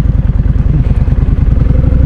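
Kawasaki Vulcan cruiser motorcycle engine running under way through a turn at an intersection, a rapid steady beat of low exhaust pulses that grows a little louder near the end as the bike pulls away.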